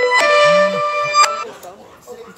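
Mobile phone ringtone: a repeating electronic melody of sustained notes, cut off about one and a half seconds in when the phone is silenced.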